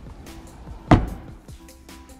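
Trunk lid of a 2021 Infiniti Q60 Red Sport 400 shut once: a single sharp thud about a second in, with a brief ring dying away after it.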